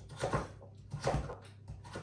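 Kitchen knife cutting through firm butternut squash and knocking on a wooden cutting board: a few separate cuts, two close together early and two more about a second in.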